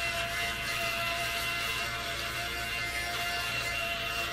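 Handheld electric fabric shaver (lint remover) running steadily with a constant high-pitched motor whine as it is drawn over a sweatshirt to remove lint.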